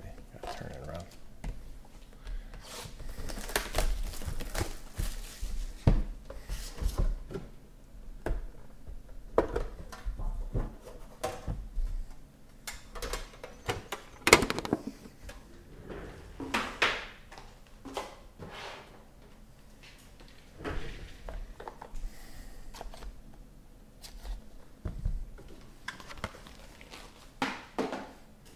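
Hands handling and opening sealed cardboard trading-card boxes on a tabletop: scattered scrapes, taps and rustles of cardboard and wrapping, with one sharp knock about halfway through.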